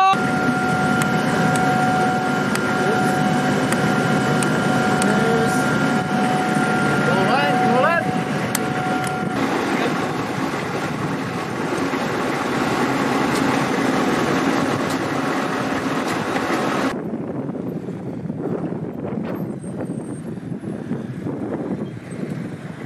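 Patriot missile launcher's equipment running steadily, a constant machine noise with an even high whine and a brief rising squeal about eight seconds in. About 17 s in, the sound cuts to a quieter outdoor noise with wind on the microphone.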